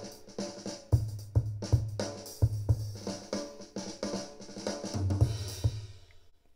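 A funky drum-kit break played back from a GarageBand Drummer track: kick drum, snare, hi-hat and cymbals in a steady groove, cutting off suddenly at the very end.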